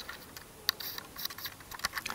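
Light plastic clicks and taps from handling a DJI Mavic Air remote controller and its removable, screw-in control sticks, with one sharper click about two-thirds of a second in.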